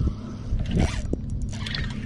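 Steady low hum and water noise around a bass boat on open water, with a brief swishing sound just under a second in.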